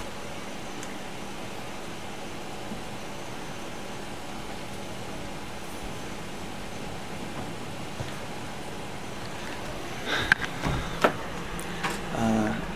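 Steady low hum of a parked Ford Police Interceptor Utility SUV idling. A few short knocks and rustles of the camera being handled come near the end.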